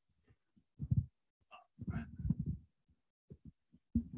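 Faint, muffled voice fragments in short pieces that cut in and out abruptly: one about a second in, a longer one around two seconds in, and small ones near the end.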